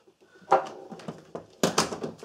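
Metal hand tools knocking on a wooden workbench as a socket is set down and a socket wrench is picked up: two sharp knocks, one about half a second in and a louder one near the end.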